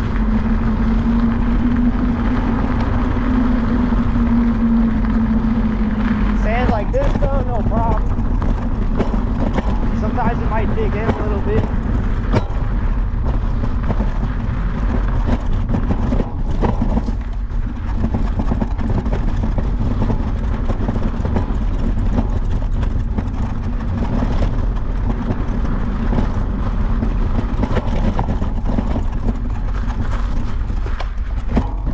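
Riding an electric scooter over a rough dirt path: wind buffeting the microphone and tyre rumble, with bumps and knocks from the uneven ground. A steady motor hum stops about six seconds in.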